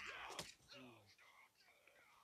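Faint speech in the first second, fading into near silence.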